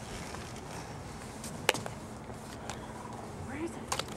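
Footsteps on playground gravel, with a sharp click about halfway through and a short vocal sound near the end.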